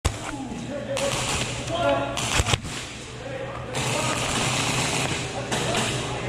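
Indistinct voices calling out over a noisy background, with sharp knocks near the start and about two and a half seconds in.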